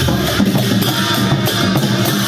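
Newar dhime drums beaten by a group of drummers in a procession, a continuous driving rhythm of drum strokes.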